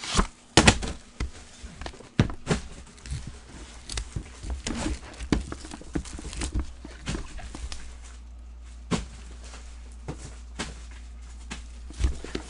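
Irregular clicks, taps and knocks of objects being handled on a tabletop, thinning out after about eight seconds, over a steady low hum.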